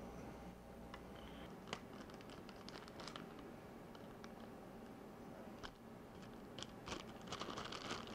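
Faint crinkling and scattered small clicks of a little zip-lock plastic bag being handled as a small cosmetic screw-cover tab is put into it, with the clicks coming more thickly near the end.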